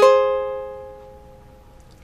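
Ukulele strummed once on a high-voiced A-flat chord, which rings out and fades away over about a second and a half.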